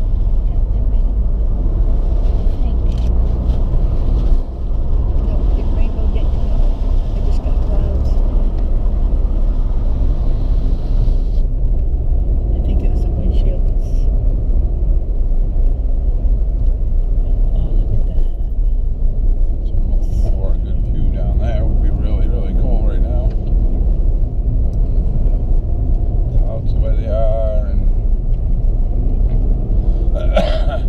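Car engine and road noise heard from inside the cabin while driving: a steady low drone with an engine hum. A higher hiss in the first third drops away about eleven seconds in.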